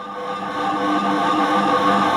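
A sustained synthesized electronic drone of several steady tones, swelling in over the first half-second and then holding level.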